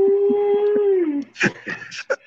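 A person's long, steady, held vocal cry on one pitch that falls away about a second in, with a few short clicks under it, followed by bursts of laughter.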